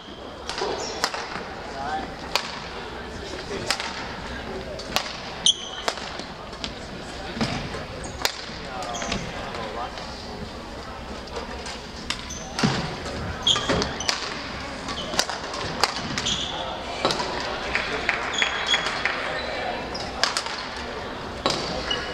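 Badminton rackets striking shuttlecocks on several courts, sharp irregular taps, with occasional short shoe squeaks on the hardwood floor over a steady murmur of voices in the gym.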